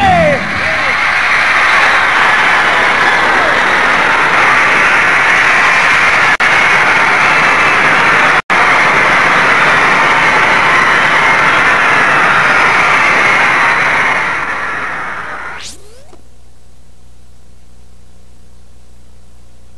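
Large concert crowd screaming and cheering at the end of a rock song, a loud unbroken wall of screams that fades out over the last few seconds and ends with a brief pitch sweep, leaving steady tape hiss.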